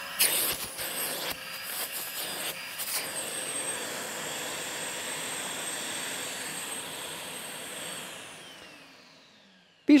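Festool CTC SYS battery-powered dust extractor running, a steady whine of its suction motor with air rushing at the hose, surging louder a few times in the first three seconds. About eight seconds in it is switched off and its motor winds down, the whine falling in pitch and fading out.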